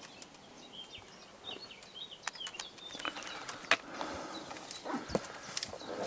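Irregular sharp clicks and knocks of boots and a trekking pole on limestone rock during a scramble, growing busier after about two seconds, with faint short high chirps in the background.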